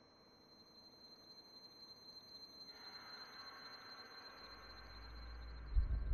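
Eerie electronic film-score sound design: a faint, steady high tone with a fast pulse, building as lower tones and then a deep drone come in, ending in a loud low boom just before the end.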